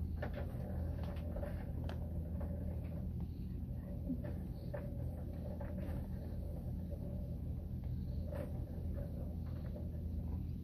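A cat purring while being stroked: a steady low rumble, with a few faint clicks of handling over it.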